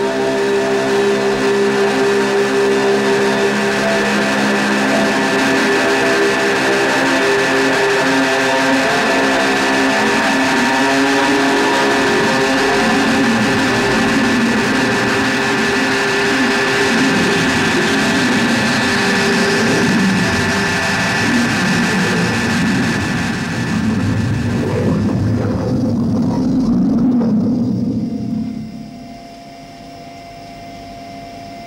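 Loud electronic sound effect of many held tones. Some pitches slide downward early on, then it thickens into a dense churning rumble and cuts off sharply near the end, leaving only a faint room hum.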